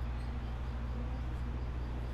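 Steady low hum with a faint even background hiss; no distinct event.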